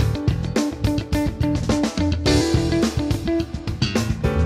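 Fender Custom Shop 1965 Telecaster Custom electric guitar played in a clean tone through an amp: a quick run of picked single notes that keeps returning to one repeated note.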